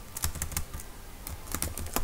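Computer keyboard typing: a run of short, irregularly spaced keystrokes as a word is typed out.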